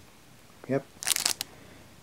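Clear plastic sleeve of a pin set card crinkling briefly as the card is handled and turned over, in a short burst about a second in.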